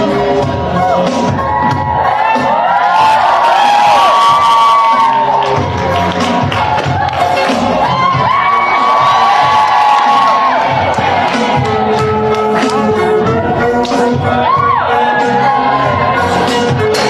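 Dance music playing, with wedding guests cheering over it. The cheering swells twice.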